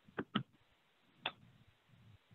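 Three short faint clicks over near silence: two close together about a quarter-second in, and one more a little past a second in.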